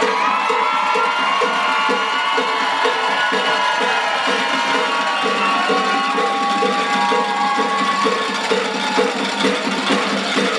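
Crowd cheering with long, held whoops and screams, over a steady beat of about two to three pulses a second.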